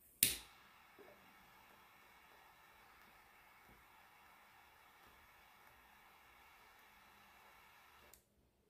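A single sharp pop just after the start, followed by a faint, steady hiss with one small tick about a second in.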